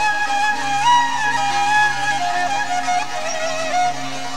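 Instrumental passage of a Zazaki folk song: a single ornamented melody line held over a steady low drone. The melody steps up about a second in and sinks lower in the second half.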